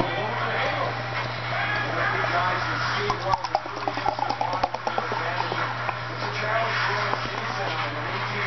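Beer poured fast from an aluminium can into a pint glass: liquid gurgling and splashing into the glass, with a quick run of glugs from about three to five seconds in as air gulps back into the can. A steady low hum runs underneath.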